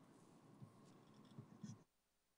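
Near silence: faint room tone with a few soft clicks, then the audio cuts off to dead silence just before the end.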